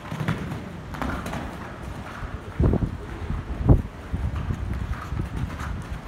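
A horse cantering on the sand footing of an indoor arena: muffled, rhythmic hoofbeats, with two much louder thumps about two and a half and three and a half seconds in.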